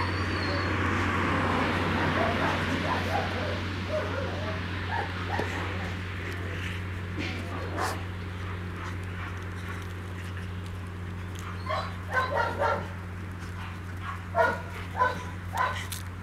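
Dog vocalizing during rough play: wavering, whine-like sounds in the first few seconds, then short sharp barks or yips in two quick bursts of about three, one a little past the middle and one near the end.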